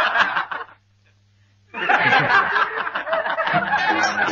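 A group of people laughing and snickering. The laughter breaks off for about a second, then starts again, and background music with a bouncy tune comes in near the end.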